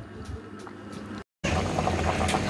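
Chicken-feet and potato curry simmering and bubbling in an aluminium pot. The sound drops out briefly a little over a second in, then comes back louder, with small scattered pops and a steady low hum.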